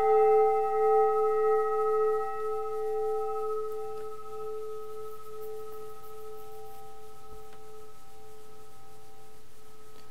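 Output of a Max 7 granulator time-stretching a short sound file, with grains 10 ms apart: a sustained, quite clean tone with several overtones. It fades over the first few seconds, the higher overtones dying first, and the lowest note pulses faintly as it trails off to a quiet steady hum.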